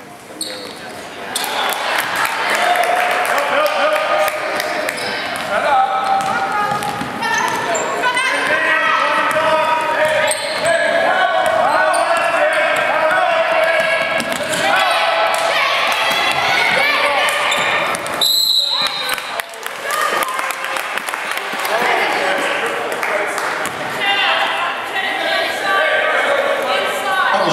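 Voices of a basketball crowd and players shouting in a gym, with a basketball bouncing on the hardwood court. A referee's whistle blows once, about two-thirds of the way through.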